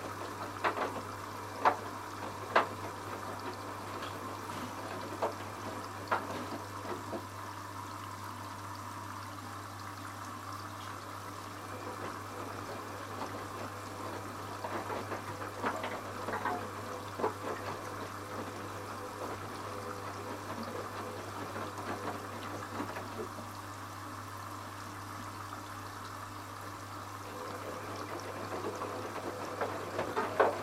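Candy RapidO front-loading washing machine tumbling its drum during the first rinse. Water sloshes and splashes at irregular intervals as the wet laundry is lifted and dropped, over a steady low hum.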